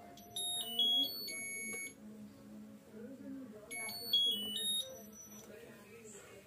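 Whirlpool Stainwash washing machine control board's buzzer sounding short electronic beep tunes of several stepped notes as its panel buttons are pressed to select spin mode. There are two runs, one about half a second in and one near four seconds.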